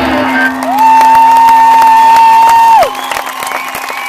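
Concert crowd cheering and clapping as a rock song ends, while a low held note from the stage rings underneath. The loudest sound is a high note held for about two seconds that slides up into it and drops sharply away at the end.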